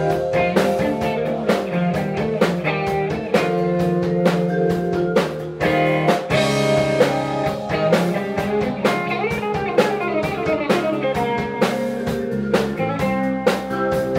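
Live blues-rock band: electric guitar over a drum kit, with a run of gliding, bending notes about two-thirds of the way through.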